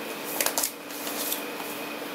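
Brief rustling, scraping handling noise about half a second in, as hands grip and turn an aluminium laptop lifted from its box, over a faint steady hum.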